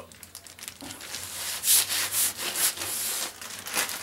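Packaging crinkling and rustling as a parcel is unwrapped by hand, in a quick irregular run of rustles.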